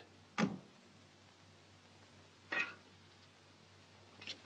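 Two soft, shuffling footsteps on a concrete floor, about two seconds apart, over the faint steady hiss and hum of an old film soundtrack.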